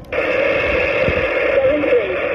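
Steady receiver hiss from a Xiegu G90 HF transceiver's speaker, the band noise of a 40-metre single-sideband receiver heard between transmissions, narrow and thin like a radio's voice channel.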